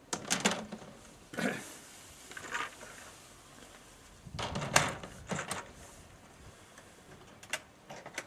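Moulded plastic beehive parts of an Apimaye Thermo Hive knocking and scraping as a queen excluder and a hive box are set down onto the stacked boxes. The knocks are short and scattered, with the loudest cluster about four to five seconds in.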